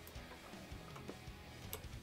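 A few faint computer keyboard keystrokes as a filename is typed, over quiet background music.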